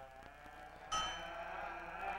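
A metal ritual bell struck once about a second in, ringing on in several clear tones that slowly fade. The ring of the previous strike is dying away before it.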